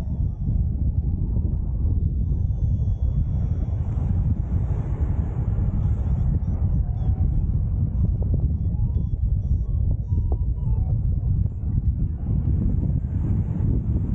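Airflow buffeting the microphone of a pilot-mounted camera in paraglider flight: a steady low rumble of wind noise.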